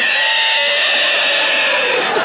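A man's loud, long, screeching roar, held on one pitch: a comedian's vocal impression of a dinosaur, which starts abruptly.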